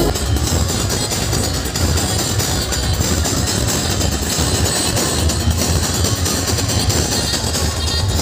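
Loud music with a heavy, steady bass beat played through a large DJ sound system.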